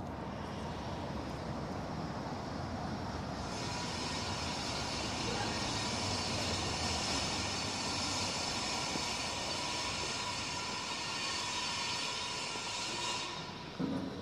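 Steady mechanical rushing noise, as of a motor or vehicle running nearby, on a city street. A strong hiss sets in sharply about three and a half seconds in and cuts off about a second before the end, over a faint steady whine.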